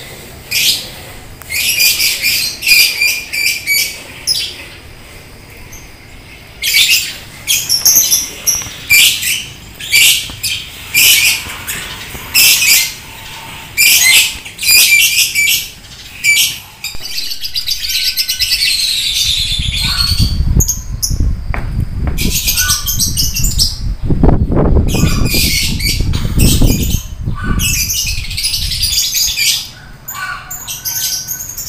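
Lovebirds calling from their cages: a run of loud, shrill chattering bursts, each under a second long, repeated with short gaps. After about seventeen seconds a steady low rumble takes over, with only a few calls left above it.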